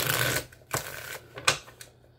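A deck of oracle cards being shuffled by hand: a half-second burst of riffling clatter, a shorter one, then a sharp snap of cards about a second and a half in.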